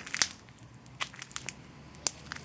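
A few faint, short clicks and crackles, spaced irregularly about half a second to a second apart, over a low steady background hiss.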